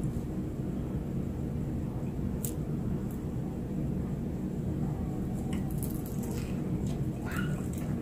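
Steady low room hum with a few faint clicks. Near the end there is a soft paper rustle as fried food is picked from a paper-lined platter.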